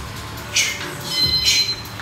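Sharp hissing exhalations of a boxer throwing punches, two in quick succession about a second apart, with a brief high squeak between them.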